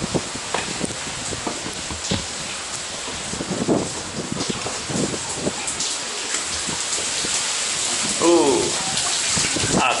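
Water of the Staubbach Falls falling and spraying near a rock tunnel: a steady rushing hiss with many short dripping clicks, growing louder near the end.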